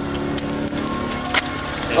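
A flipped coin landing on concrete pavement: a few quick metallic clinks with a brief high ring about half a second in, then one more small tap past a second in.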